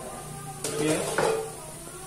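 A metal ladle and a wire spider strainer clattering and scraping against a steel wok while rempeyek crackers fry in hot oil, with the oil sizzling. The loudest part is a burst of clinking and sizzle starting a little over half a second in and lasting under a second.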